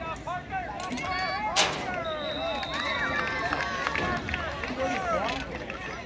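Many voices of football spectators shouting and cheering at once during a youth football play. A sharp crack about a second and a half in, then a short steady whistle blast about two seconds in, typical of a referee's whistle ending the play.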